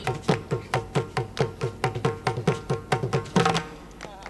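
Background music of quick drum strokes, about four or five a second, each sliding down in pitch, ending with a louder stroke near the end.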